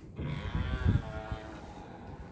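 Hotel room door being pushed open, its hinges giving a long, pitched creak that rises and falls over more than a second, with a low thud near the middle.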